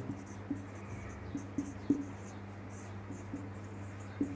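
Marker pen writing on a whiteboard: a run of short, separate strokes and taps as words are written, over a steady low electrical hum.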